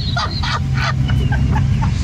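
Car engine and tyres rumbling low and steady inside the cabin while towing a caravan over beach sand. Short high shrieks of laughter and a few knocks come over it in the first second.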